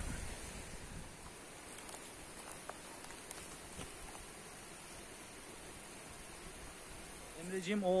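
Faint steady rushing background noise with a couple of faint ticks. A man's voice starts near the end.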